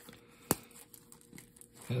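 One sharp snap as the press-stud on a nylon multi-tool sheath's flap is opened, with faint rustling of the fabric as the tool slides out.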